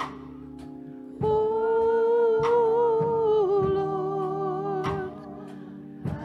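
Church choir singing a slow hymn over sustained organ chords; the voices come in about a second in and hold one long note until near the end.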